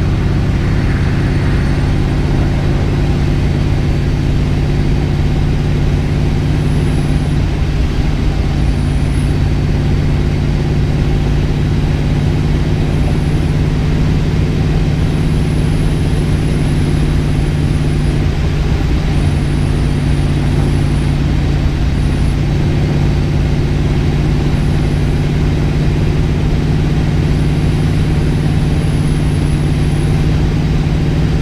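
Procharged 572 cubic-inch big-block Chevy V8 in a Pontiac GTO cruising at a steady, light throttle, heard from inside the cabin as a low, even drone with no revving.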